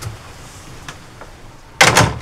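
A door shutting with one sudden loud knock near the end, over quiet room tone with a few faint ticks.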